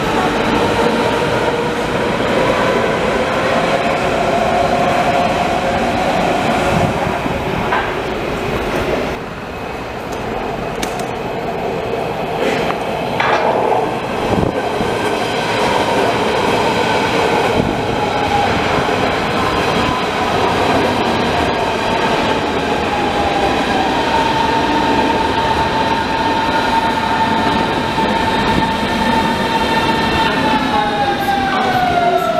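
Berlin S-Bahn electric train in motion close by: the electric traction drive whines with several steady tones that drift slowly in pitch, over the rumble of wheels on the track. A few sharp clicks come through about a third and halfway in.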